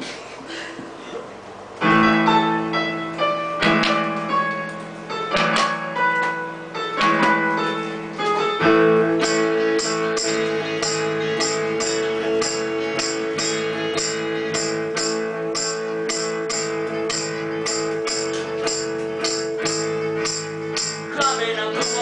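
Amateur rock band playing an instrumental intro on electric guitars, bass guitar and keyboard through a small amp. The band comes in about two seconds in with chords struck every couple of seconds, then about nine seconds in settles into a steady groove over a held chord with a regular high beat about twice a second.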